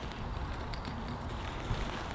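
Steady low outdoor background noise, wind rustling on the microphone, with no distinct event.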